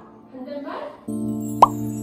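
A brief snatch of voice, then edited-in background music starts about a second in as a steady held chord. Over it comes one quick upward-sweeping 'plop' sound effect, the loudest moment.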